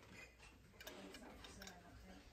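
Faint, irregular light clicks as a small cast-metal Banthrico toy car bank is handled and turned over in the hand; otherwise near silence.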